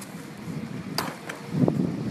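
A sharp click about a second in and a couple of lighter ticks, over a steady hiss; near the end a short, louder low hum from a voice.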